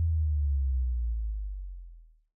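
The last low bass note of an instrumental karaoke backing track, held alone after the rest of the music has stopped and fading out near the end.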